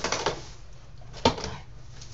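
Cardboard box being slit open with a small knife and its flaps pulled up: a scraping, rustling cardboard sound with one sharp click a little over a second in.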